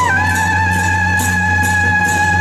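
Taiwanese temple-procession music: a suona (reed horn) holds one long note that dips slightly in pitch at the start, over a repeated high metallic splash of percussion.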